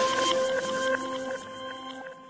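A produced transition sting between segments: a hiss with several steady held tones, fading away gradually.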